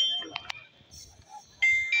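A high electronic tune of steady beeping notes, stepping in pitch, fades at the start; it is followed by two sharp clicks and then starts again suddenly, louder, about one and a half seconds in.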